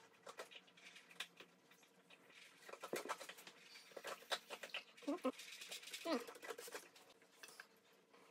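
Scattered light clicks and taps of glass jars and a mixing utensil being handled on a tabletop, with a couple of brief voice-like sounds around the middle.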